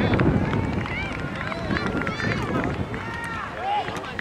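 Scattered, overlapping high-pitched shouts and calls from players and spectators on a soccer field, with no clear words. Wind rumbles on the microphone for about the first second.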